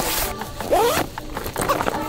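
Zipper on a large fabric duffel-style gear bag being pulled shut, over background music.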